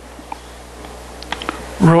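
Chalk writing on a blackboard: light scratching with a few sharp taps as symbols are chalked, a quick run of taps about a second and a half in. A man's voice begins just at the end.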